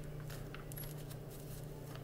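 Tarot cards being shuffled by hand: faint, irregular flicks and taps of the cards over a steady low hum.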